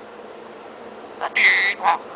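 Parrot calling about a second and a half in: one loud, short squawk followed at once by a briefer, lower call.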